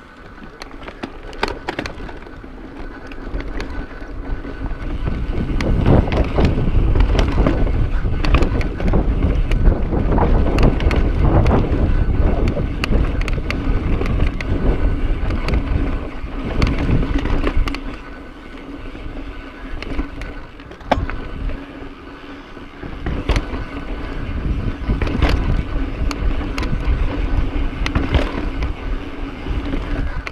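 Mountain bike rolling over slickrock sandstone: a steady tyre rumble with frequent knocks and rattles from the bike, loudest in the middle stretch and easing for a few seconds past the midpoint. A faint steady hum runs underneath.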